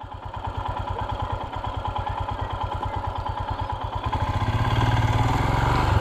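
Motorcycle engine idling with a steady, rapid low beat, getting louder about four seconds in.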